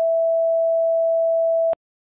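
Steady, loud electronic test tone at one pitch, the tone that goes with colour bars, starting with a click and cutting off sharply with a click near the end.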